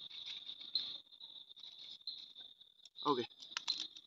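Paper and dry leaves being crushed by hand, a crackling rustle that stops about a second in, over a steady high chorus of crickets.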